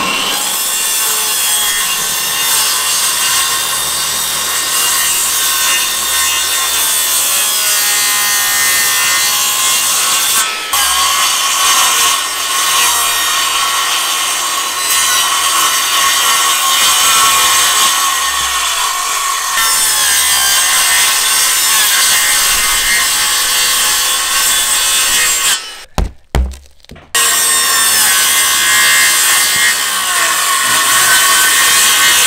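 Makita corded magnesium circular saw cutting through OSB roof sheathing, the opening for a roof vent, with a steady motor whine under the cutting noise. It runs almost without a break, stopping for about a second near the end before the cut resumes.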